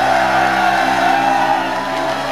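Band's amplified instruments ringing out on held notes at the end of a live rock song, with whoops and cheering from the crowd.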